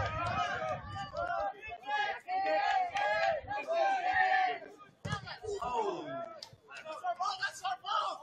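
Several voices shouting and calling across the field, with no clear words: short shouts overlapping, some calls held for about a second near the middle.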